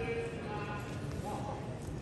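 Indoor badminton hall ambience: indistinct voices in the hall and a few light knocks or footsteps over a steady low room rumble.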